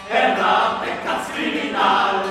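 Medieval troubadour song performed in early-music style: voices singing a slow, chant-like melody in sustained notes. A new phrase swells in just after the start and another near the end.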